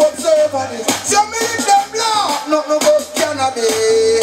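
A man singing reggae-style into a handheld microphone over a backing track with a pulsing bass line and drums, ending on one long held note.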